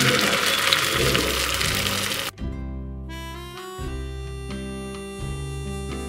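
Spinach-and-egg omelette mixture sizzling in a hot pan over background music; the sizzle cuts off abruptly a little over two seconds in, leaving only the music, a melody of held notes.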